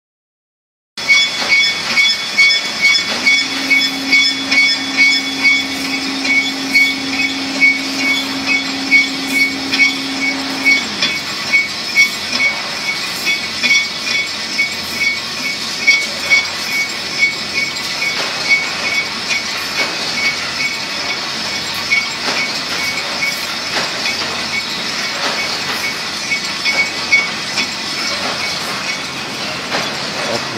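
Steel wire hanger PE powder coating machine running, with a steady mechanical noise and high whine and a regular clacking about twice a second. A low hum comes in a few seconds in and winds down with a falling pitch about ten seconds in.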